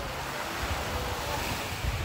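Small sea waves washing at the shore, with wind rumbling on the microphone.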